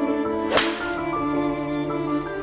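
A golf club striking a ball once with a sharp crack about half a second in, over background string music.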